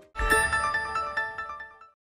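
Short TV news transition sting: a bright, chime-like electronic chord sounds once and rings away over about a second and a half.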